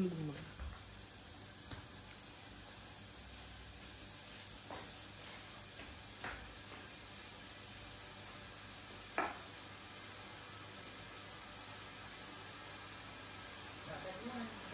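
Quiet background with a steady high-pitched hiss, broken by a few faint knocks about five, six and nine seconds in.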